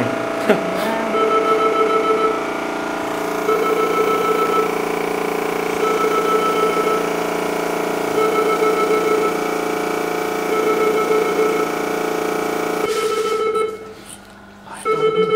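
Newborn baby crying in repeated bouts about a second long, roughly every two seconds, over a steady multi-tone hum that stops shortly before the end.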